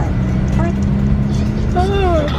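Car cabin noise while driving on a highway: a steady low rumble of engine and tyres with a steady hum, heard from inside the car.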